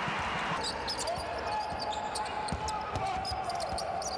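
A basketball being dribbled on a hardwood court, heard as scattered low bounces with short high squeaks from players' sneakers, over steady arena background noise. A faint steady tone comes in about a second in.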